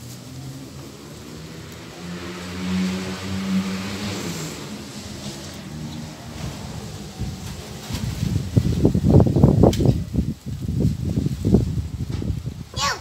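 A motor vehicle engine running nearby, its low hum bending slightly in pitch as it passes through the first half. In the second half comes an irregular run of loud, low rumbling knocks.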